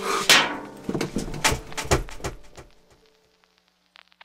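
A loud crash just after the start, then a run of sharp knocks and thuds that fade out within about three seconds: impact sound effects closing the song after its music has stopped.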